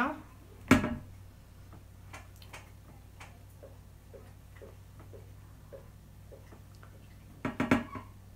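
Quiet room with a steady low hum and faint, regular ticking at about two to three ticks a second. A short burst of voice comes about a second in, and another near the end.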